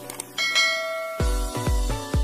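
A bright bell-like chime sound effect rings out about half a second in and fades, then electronic dance music with a steady kick drum comes in a little after one second, about two beats a second.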